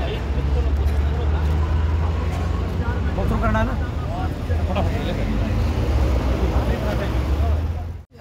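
Roadside ambience: a steady low rumble of traffic on a highway, with people's voices talking in the background.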